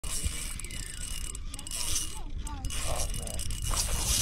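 Spinning fishing reel working against a hooked trout's run, with a faint steady high whine from the reel, over a low wind rumble on the microphone.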